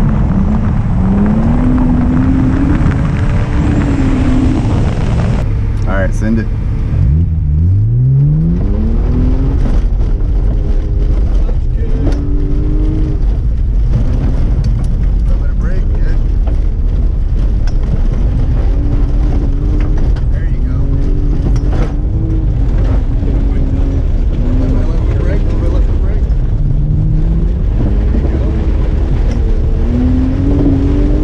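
BMW E36's inline-six engine revving up and down hard as the car slides around a dirt course, with one steep climb in revs about seven seconds in. Heard first from outside on the hood, then from inside the cabin.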